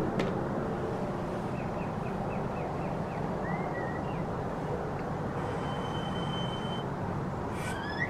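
Steady rumble of city traffic ambience, with a run of faint high chirps like birds about two seconds in and a thin high steady tone near the end.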